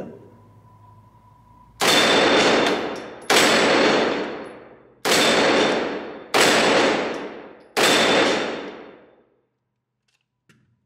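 Five single shots from a Grand Power Stribog SP9A1 9mm carbine, about one and a half seconds apart, each echoing off the concrete of an indoor range. Each shot comes with the ringing clang of a steel flapper target being hit.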